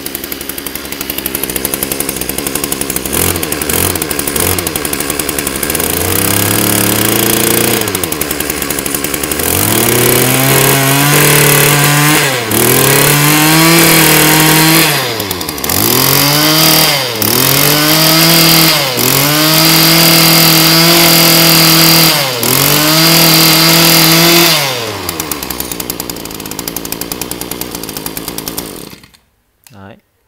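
A Mitsubishi brush cutter's small two-stroke engine (35 mm bore) idles, then is revved up and down with the throttle about eight times, several revs held briefly at high speed. It settles back to idle and cuts off just before the end, running very smoothly throughout.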